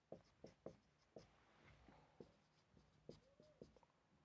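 Faint marker pen writing on a whiteboard: several short, irregular stroke sounds, with one brief squeak of the tip a little after three seconds.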